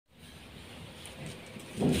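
Fingers handling blocks of soft homemade gym chalk over a low steady rumble, with faint light scrapes, then a soft thud near the end as a chalk block is lifted from the tray.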